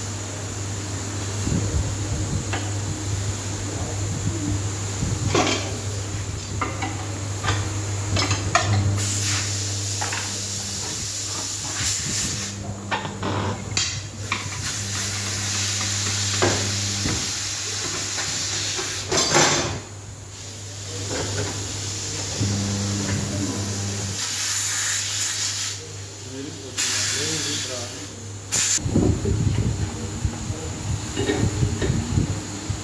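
Pneumatic tyre-changing machine working a low-profile tyre onto an alloy wheel: repeated bursts of compressed-air hissing and a few sharp knocks over a steady low electric hum.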